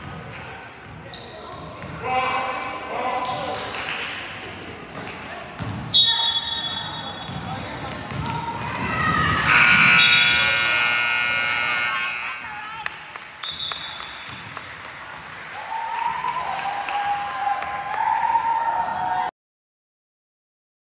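Gym scoreboard buzzer sounding once for about two and a half seconds near the middle, over shouting voices and basketball bounces on a hardwood court. A short referee's whistle blows about six seconds in.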